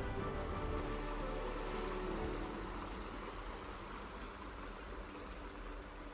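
Soft background music fading out over the steady rush of the Tiber's water running over the rapids.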